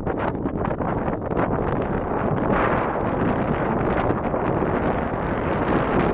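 Wind buffeting the microphone: a loud, steady, fluttering rush of noise, heaviest in the bass.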